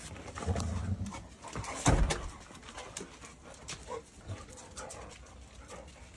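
Golden retrievers moving about close by, with a single loud thump about two seconds in.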